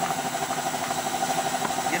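A motor running steadily in the background: an even, pulsing mid-pitched hum over a hiss.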